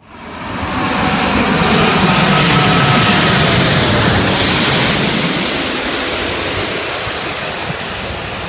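A jet airliner, a Singapore Airlines Airbus A380 with its gear down on landing approach, passing low overhead. Loud engine noise swells within the first second, stays at its loudest for several seconds, then eases off a little, with faint whining tones that fall in pitch as it goes past.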